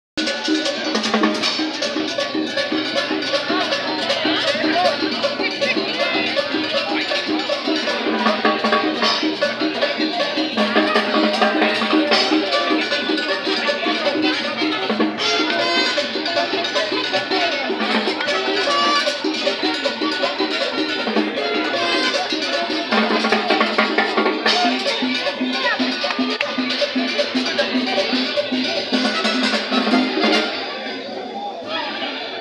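A live street band playing upbeat Latin dance music, with drum kit, cowbell and percussion keeping a steady beat.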